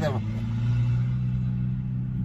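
A Volkswagen's engine idling close by with a steady low drone, loud enough that it is called noisy.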